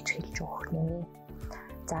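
A woman speaking Mongolian over soft background music.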